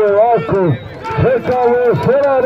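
A man's loud, drawn-out shouting with a wavering pitch, broken briefly about a second in, over draught horses galloping and men running on a dirt track.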